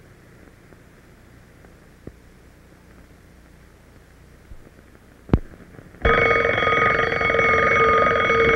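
Faint hiss with a single click, then a twin-bell alarm clock rings loudly and steadily for the last two seconds.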